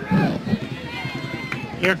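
Indistinct background voices of spectators at a youth baseball game, with no clear words, and the commentator starting to speak near the end.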